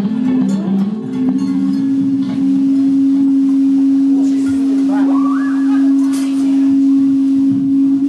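A live rock band winding down to one long sustained note, held steady by an instrument over the quieter rest of the band.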